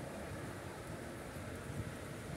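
Wind on the microphone: a steady, uneven low rumble over faint outdoor ambience.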